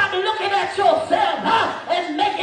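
A woman's voice, loud and in short, raised phrases, carried by a handheld microphone through PA speakers in a large hall.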